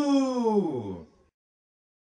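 A voice holding one long drawn-out cry of "you" with no beat under it, sliding down in pitch and stopping about a second in; then silence.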